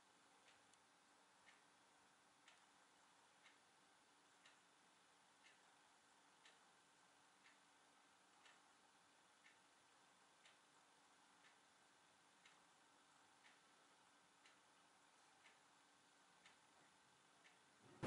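Near silence: room tone with a faint, even tick about once a second.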